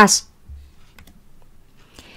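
A woman's speech breaks off, then a quiet pause with a few faint computer keyboard clicks.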